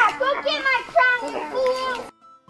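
Speech only: a child shouting lines, high-pitched and excited.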